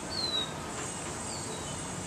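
Outdoor yard ambience: a steady high insect drone, with a short, high, falling chirp about a quarter second in and a fainter one about a second later.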